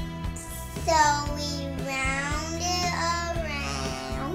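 A young girl singing a few long, wavering wordless notes over steady background music with guitar.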